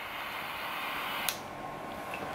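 Butane torch lighter's jet flame hissing steadily, shut off with a sharp click a little over a second in, after which a softer hiss remains.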